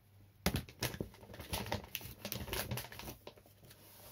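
Torn trading-card packaging being handled and crumpled: irregular crinkling and tearing rustles starting about half a second in.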